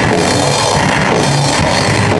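Loud live rock band performing, with drums prominent in a dense, steady wall of sound.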